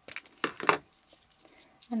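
Hands handling crinkly paper craft materials: a quick cluster of short rustles and clicks in the first second, then quiet.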